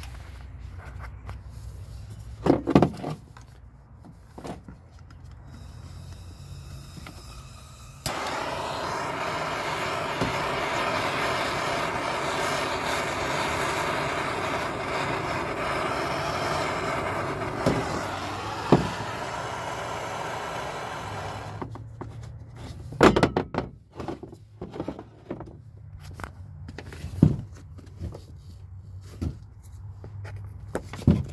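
Hand-held gas torch burning with a steady hiss as its flame plays on a leather logger boot. The flame comes on suddenly about eight seconds in and dies away after about thirteen seconds. Sharp knocks from handling come before and after it and are the loudest sounds.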